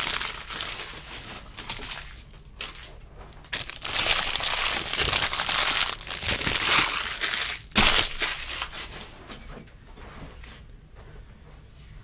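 Plastic trading-card pack wrapping crinkling and crumpling in several bursts, with a sharp snap about eight seconds in.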